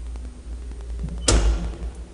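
Steady low hum, then a little over a second in a single loud bang with a short ringing tail, as an elevator door shuts.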